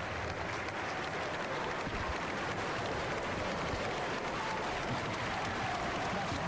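Large audience applauding steadily, a dense continuous clapping with a few voices in it.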